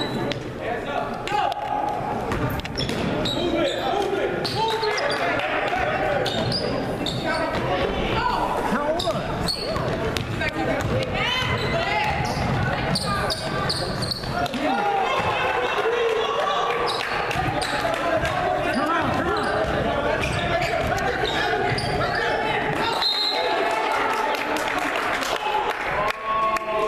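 Basketball bouncing on a hardwood gym floor during play, under steady spectator chatter and calls in a large gymnasium.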